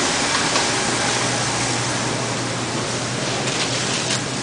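Steady hiss with a constant low hum: the background noise of a supermarket aisle beside open refrigerated display cases, with a few faint ticks near the end.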